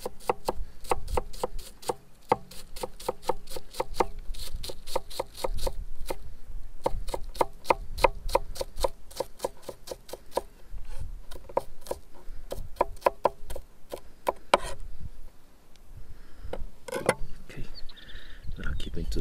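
A kitchen knife mincing red onion on a plastic cutting board: rapid strokes against the board, about four to five a second, in runs broken by short pauses.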